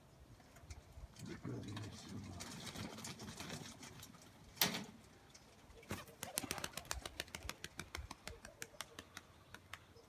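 Pigeons cooing for the first few seconds, then a single sharp clap a little before halfway. From about six seconds in, a fast run of wing claps, roughly eight a second, as a released fighting pigeon takes off and climbs.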